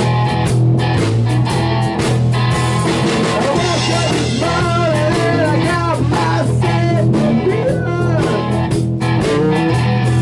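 A rock band playing live: electric guitar lead with bending notes over rhythm guitar, bass guitar and drum kit.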